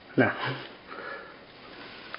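A short vocal sound from a man, then breathy sniffing close to the microphone.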